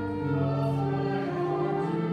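Slow choral singing of a hymn, with long held chords changing slowly.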